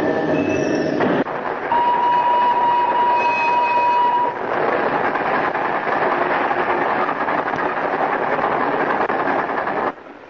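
Film score music ends about a second in. Then a train whistle sounds as one long steady tone for about two and a half seconds, followed by the steady noise of a train running.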